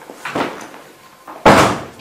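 A soft thump, then about a second later a loud, sharp bang like a wooden door or cupboard being knocked or shut.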